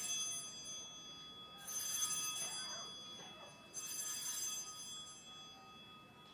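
Altar bell rung three times at the elevation of the consecrated host: a strike as it begins, another about a second and a half in, and a third near four seconds. Each is a clear, high ringing of several tones that is left to fade.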